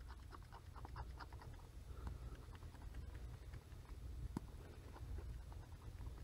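Faint, irregular scratching and tapping of a stylus tip scribbling fast across a Surface Pro 3's glass screen, over a low steady hum.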